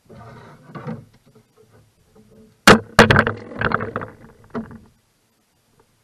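Knocks and clatter in a canoe: two sharp knocks about two and a half seconds in, then a couple of seconds of bumping and rattling that dies away.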